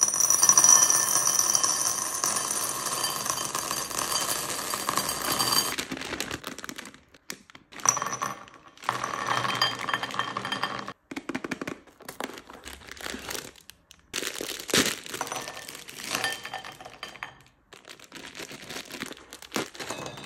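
M&M's poured from the packet into a ceramic bowl: a dense rattle of hard-shelled candies on ceramic, with the bowl ringing, for about six seconds. Shorter pours of chocolate-coated sweets into another bowl follow, along with plastic packet crinkling.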